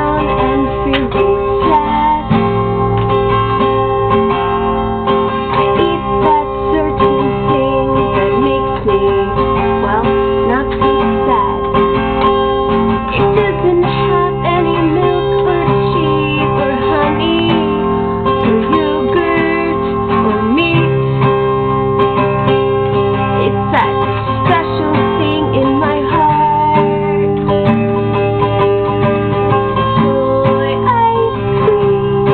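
A woman singing while strumming an acoustic guitar.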